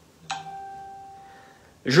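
A single bell-like electronic chime that sounds once, about a third of a second in, and fades away over about a second. A man starts speaking just before the end.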